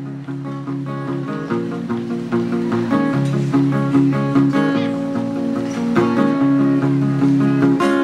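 Live acoustic band playing an instrumental passage: strummed acoustic guitars with banjo in a steady rhythm, growing a little fuller about three seconds in.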